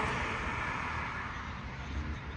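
A passing car on the road, its tyre and engine noise slowly fading away.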